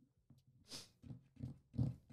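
A man's low, breathy chuckles: a handful of short bursts that grow a little louder toward the end.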